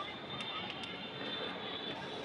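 Chalk writing on a blackboard: a few faint taps and scrapes as a word is written and underlined, over a steady background noise with a faint high whine.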